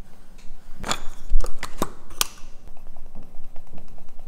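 Leather work being handled close to the microphone: a quick run of sharp clicks and taps, bunched between about one and two and a half seconds in, with the sharpest near the middle.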